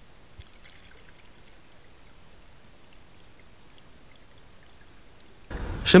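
Quiet, steady water-like hiss with a few faint ticks in the first second and a half; a louder rush of noise comes in about half a second before the end.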